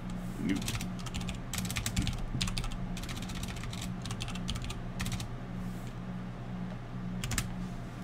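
Computer keyboard typing in several short bursts of clicks, with a steady low hum underneath.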